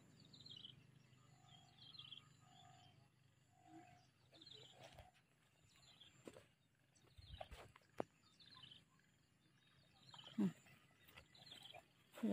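Near silence with faint bird chirps scattered throughout, and a short run of four soft, low, evenly spaced calls about a second apart in the first half, with a few faint clicks.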